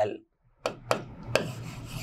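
Hand-writing strokes on a dark teaching board: a few sharp taps, then a scratchy rubbing as symbols are written.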